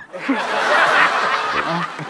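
A studio audience laughing: a burst of crowd laughter that swells in the first second and eases off near the end.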